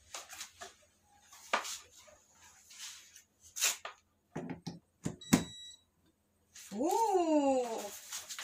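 Handling knocks and rustles as an aroma diffuser's power cord is plugged in, then a short electronic beep about five seconds in as the unit gets power. Near the end, a drawn-out call that rises and then falls in pitch.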